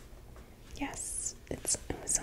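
A woman whispering close to the microphone, starting a little under a second in after a quiet moment.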